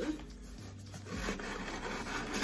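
Soft rubbing and rustling of objects being handled, with a brief low hum about halfway through.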